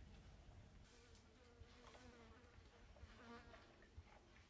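Faint buzzing of a flying insect, its pitch wavering up and down for a couple of seconds, against near silence.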